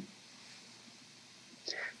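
A pause in a man's speech: faint steady room hiss, with a short soft breath-like sound near the end.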